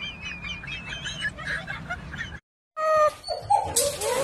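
Rapid high-pitched chirping calls, many short wavering peeps in quick succession, for the first two seconds or so. After a brief silent break, a domestic cat starts meowing, with short calls that turn into a long held meow at the very end.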